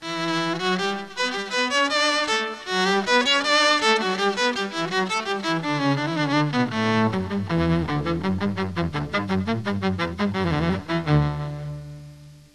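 Electric violin bowed through a pedal-board string-ensemble effect, playing a melodic phrase of sustained notes that moves lower in the second half. Near the end the pitch dips and rises quickly, then a low held note fades out.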